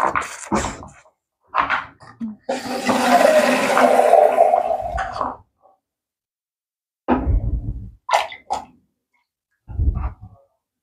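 Water pouring into a stainless steel pot for about three seconds in the middle, the loudest sound here. Short knocks of a knife chopping pumpkin on a bamboo cutting board come before and after it.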